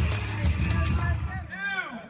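Music with a heavy bass runs under outdoor noise. It cuts off abruptly about three quarters of the way in, and a voice shouts a race-start countdown.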